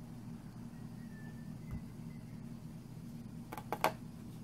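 A steady low room hum, then three quick sharp taps close together near the end as the punch-needle embroidery pen is jabbed through fabric stretched in a hoop.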